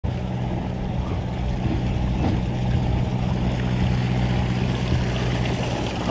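Engine of a docked sportfishing boat running steadily at idle, a low even hum.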